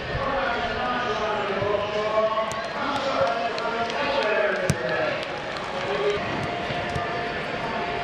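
Footballs being kicked and passed on grass: several sharp thuds of boot on ball, the loudest a little past halfway, over the voices of players talking and calling.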